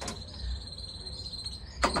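An insect, cricket-like, singing one steady high-pitched note, with a faint low rumble underneath.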